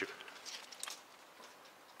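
Faint rustling with a few light ticks in the first second, from leaves of a yucca-like plant being disturbed by hand.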